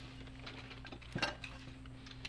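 Faint clinks of cutlery and dishes at a dinner table, one a little louder about a second in, over a steady low hum.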